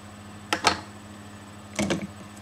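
Handling noises from cosmetic packaging: a couple of sharp clicks and rustles about half a second in and another cluster near the end, over a faint steady hum.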